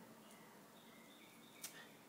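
Near silence, with a single brief, faint click about one and a half seconds in.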